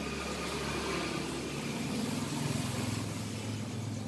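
Low, steady hum of a running engine, a little louder about halfway through.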